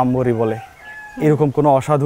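A man speaking in Bengali. In a short pause about halfway through, a bird calls faintly.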